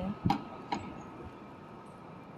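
Sharp, evenly spaced ticking, about two clicks a second. It stops under a second in and leaves only a faint steady background.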